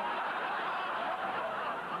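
Audience laughing: a steady wash of many voices laughing together.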